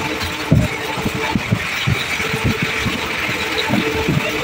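Railway running noise heard from the open doorway of a moving passenger train as a goods train passes close alongside: a steady rush of rolling wheels and wind, with irregular wheel knocks and clatter over the rail joints.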